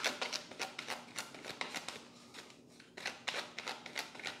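A deck of tarot cards being shuffled by hand: rapid, soft card flicks and riffles, easing off in a short pause a little past halfway, then resuming.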